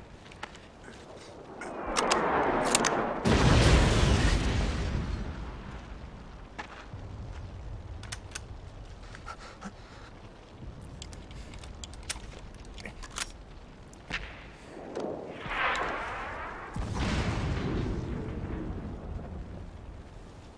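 War-film battle sound effects: scattered distant rifle shots crack throughout. About two seconds in, a loud rushing sweep ends in a deep explosion boom, and a second rushing pass with a low rumble comes around fifteen seconds in.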